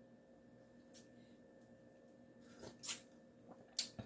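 Quiet kitchen room tone with a faint steady hum, broken by a few short, soft clicks; the loudest comes about three seconds in.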